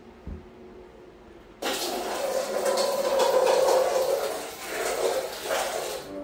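Water poured from a cup into a stainless steel dog bowl, a continuous splashing rush that starts abruptly after about a second and a half and runs about four seconds. A brief thump comes just before it.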